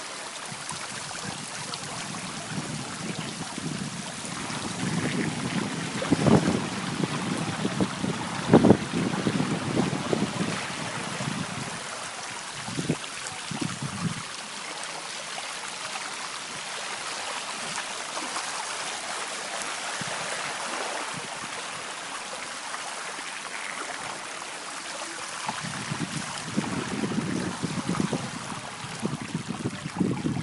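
Steady hiss of floodwater running over a street after a cloudburst. Spells of low rumbling with a couple of sharp thumps come about a third of the way in and again near the end.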